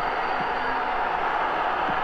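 Steady stadium crowd noise, an even roar with no single voice standing out.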